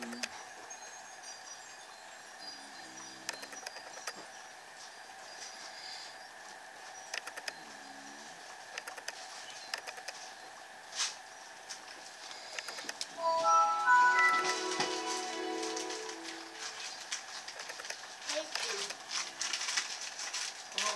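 Faint voices and music in the background, loudest in a short run of clear musical notes about two-thirds of the way through, over light taps and strokes of a felt-tip marker on paper.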